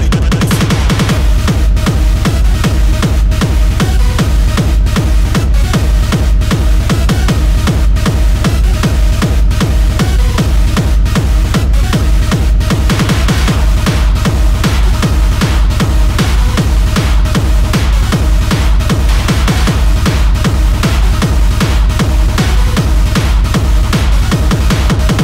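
Hard techno with a fast, heavy four-on-the-floor kick drum, about two and a half kicks a second; the full kick comes back in right at the start after a quieter passage.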